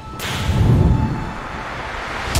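Intro-animation sound effect: a sudden whooshing hit about a quarter of a second in, followed by a low rumble that fades away.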